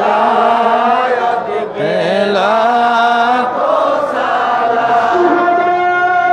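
Male voice singing an Islamic devotional chant into a handheld microphone over a public-address system, with long held notes that bend and waver in pitch.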